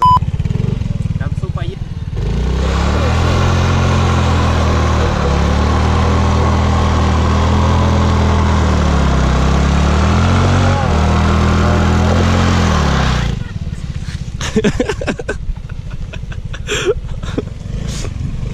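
Yamaha 125 cc single-cylinder scooter engine held at high revs for about eleven seconds in a stationary burnout, its rear wheel spinning in loose sand. The revs sag and recover a few times, then drop away suddenly.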